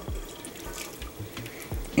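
Melted butter poured from a glass bowl into a stainless steel mixing bowl, a faint liquid pour and trickle.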